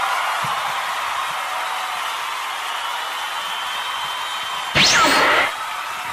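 A steady hiss-like sound-effect bed, then a loud whoosh sound effect with a sweeping pitch about five seconds in, lasting about half a second.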